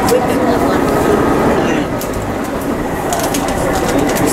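Overlapping chatter of passengers inside a railcar, over the steady low rumble of the train.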